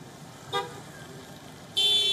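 A vehicle horn gives a short toot about half a second in, then a louder, longer honk near the end, over steady street noise.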